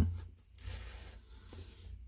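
Faint rustling and scraping as a potted pitcher plant's leaves and plastic label are handled and let go, with a light click about halfway through.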